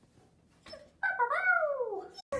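German Shepherd puppy giving one drawn-out whining cry about a second in, its pitch falling over about a second.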